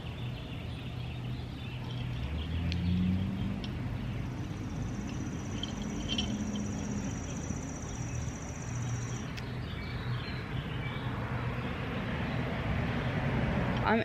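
Outdoor ambience: a steady low rumble of distant road traffic, with a thin high-pitched buzz held for about five seconds in the middle and a few faint bird chirps.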